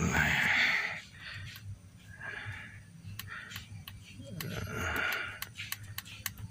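A person breathing out heavily three times, each a breathy, unpitched exhale lasting about half a second to a second, with light clicks between them.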